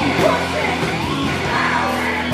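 Live rock band playing: electric guitar, bass guitar and drums, with a man singing into the microphone.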